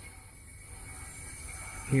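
Faint steady hiss of R-407C refrigerant flowing into a heat pump during charging, growing slightly louder.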